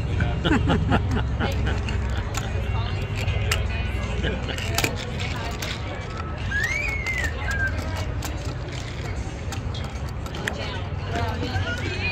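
Indistinct voices and background music over a steady low hum, with a short high chirp that rises and falls about six and a half seconds in.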